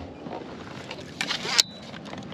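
A hooked halibut splashing at the water's surface beside a kayak: a short splashy burst about a second and a half in, over a steady background hiss.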